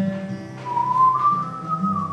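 Acoustic guitar ringing with a whistled melody over it: a single clear note comes in about half a second in, rises slightly and is held, then steps back down near the end.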